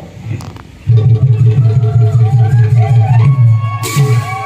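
Live bhaona stage music starting about a second in: a loud, fast low drumbeat under a wavering melodic line, with a steady higher held note joining past the three-second mark and a sharp clash just before the end.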